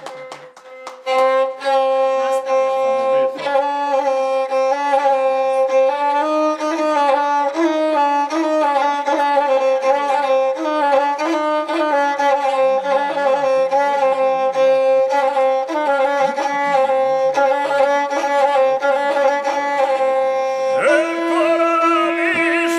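A gusle, the Serbian single-string bowed fiddle, played solo as the introduction to an epic song: a steady droning note with a wavering, ornamented melody around it. Near the end, a man's voice begins singing over it.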